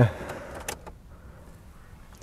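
A man's hesitant 'uh' ending at the start, then a low steady background with one short click about two-thirds of a second in.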